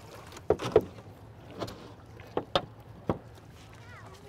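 Wooden oars knocking and clunking in their oarlocks and against a rowboat as they are shipped. There are about six short, sharp knocks at uneven intervals.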